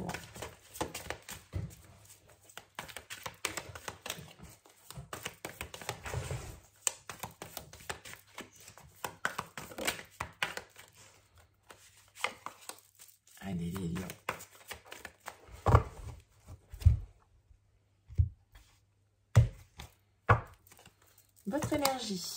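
A deck of Santa Muerte tarot cards being shuffled by hand: a continuous patter of card-on-card slaps and rustles. In the last few seconds, several separate loud knocks stand out.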